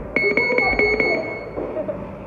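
Electronic boxing-gym round timer beeping rapidly, about six high beeps in a second, the last one ringing on briefly before fading.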